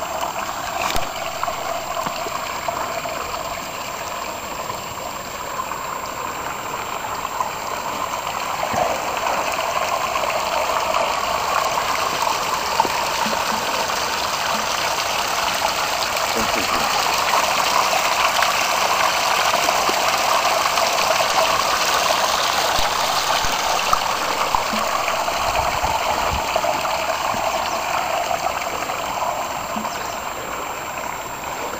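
Steady splashing and trickling of water running down a small stone garden waterfall, louder around the middle.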